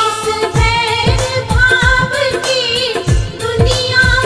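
Hindi devotional bhajan music: a melodic sung line over a steady drum beat.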